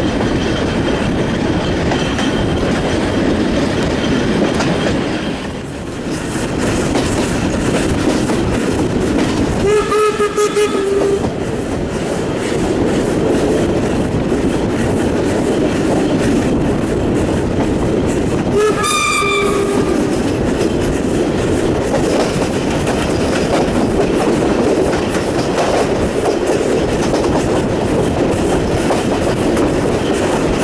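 Passenger train rolling steadily, with a constant rumble of wheels on rail. The steam locomotive's whistle sounds twice: a blast of just over a second about ten seconds in, and another just under twenty seconds in.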